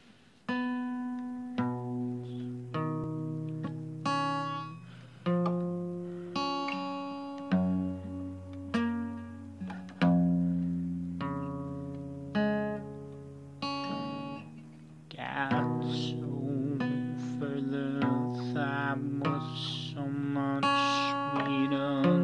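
Steel-string acoustic guitar played solo as an introduction: chords and single notes plucked and left to ring, each one fading away. About two-thirds of the way through, the playing becomes busier and more continuous.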